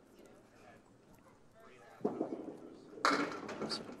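A candlepin bowling ball drops onto the wooden lane about two seconds in and rolls. About a second later it strikes the pins with a loud clatter of wood, glancing off the head pin.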